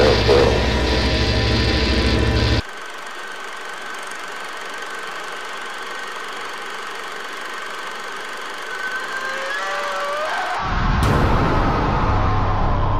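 A loud, low, engine-like droning rumble in a horror film soundtrack. It cuts off abruptly a little over two seconds in, leaving a thinner hiss with a steady high tone and some wavering tones. The low rumble returns suddenly shortly before the end.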